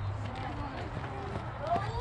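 Distant voices of players and spectators calling out across a softball field, with a rising call near the end, over a low steady rumble.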